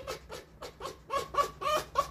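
Red fox giving a quick run of short, pitched calls, about four a second: excited vocalising as it anticipates a walk.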